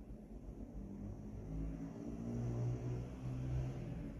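Low engine hum of a motor vehicle, growing louder through the second half and dropping slightly in pitch.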